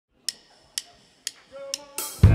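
A drummer counts the song in with four sharp, evenly spaced clicks about half a second apart. A faint held note sounds under the last two clicks.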